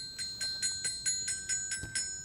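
Tinkling chimes: a quick, even run of small bell-like strikes, about six a second, over a bright high ringing chord that lingers and fades after the last strike.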